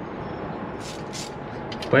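Hands handling a car's air filter element and housing, making a couple of brief scraping rustles about a second in, over a steady background hum.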